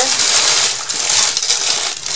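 Continuous rustling and clattering of craft products and their packaging being rummaged through by hand, a dense crinkly noise with many small clicks.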